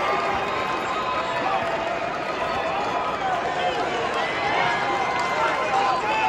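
Arena crowd: many voices talking and shouting at once, as a steady hubbub with individual shouts rising above it.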